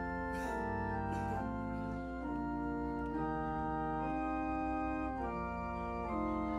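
Church organ playing slow, sustained chords that change about once a second.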